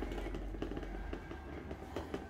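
Faint scattered pops and crackles of fireworks at midnight.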